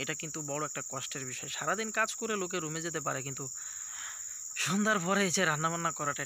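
A man talking, with a short pause a little past halfway, over a steady high-pitched drone of insects in the plantation.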